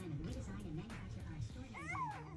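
Background music with a low wavering melody; near the end a short high cry slides up and then down in pitch, like a meow.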